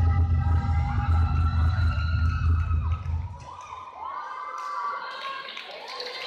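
Dance music with a heavy bass beat, cutting out about three and a half seconds in; an audience cheering and shouting over it and on after the music stops.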